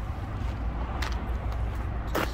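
Low, steady outdoor rumble with a faint click about a second in.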